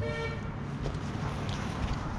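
A brief, steady horn-like toot lasting about half a second, then a steady background noise with a couple of faint ticks.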